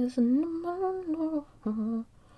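A woman humming a tune to herself: one long held note of over a second, then after a short break a shorter, lower note near the end.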